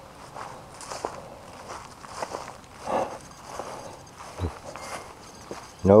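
Footsteps walking across grass: an irregular series of soft steps.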